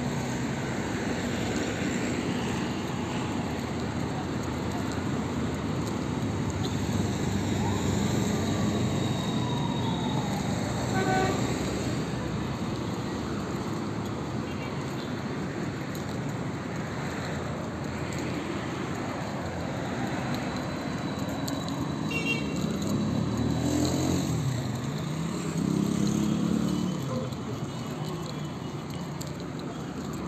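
Steady street traffic noise from passing cars, with a couple of short car horn toots about a third of the way in and again about three quarters of the way through. People's voices come through briefly near the end.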